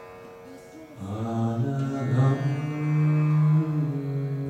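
Indian-style devotional music: a drone of steady held tones, joined about a second in by a low voice chanting a mantra in long held notes.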